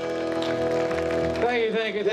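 A rock band's held final chord of electric guitars and keyboard ringing out. About one and a half seconds in, a voice breaks in over it with rising and falling pitch.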